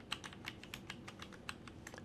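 Typing on a computer keyboard: a quick, steady run of faint keystrokes, about seven a second.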